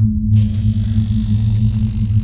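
Electronic logo-intro sound: a loud, deep steady drone with short high pings sparkling over it from about half a second in.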